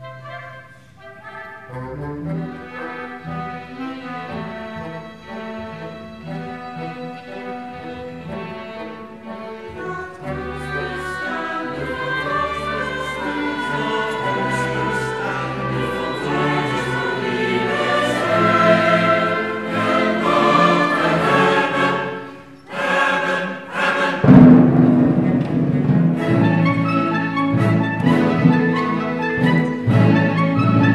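Choir and chamber orchestra (strings, woodwinds, harp and timpani) performing a cantata. The music starts quietly and builds, drops away briefly a little after twenty seconds in, then returns louder and fuller.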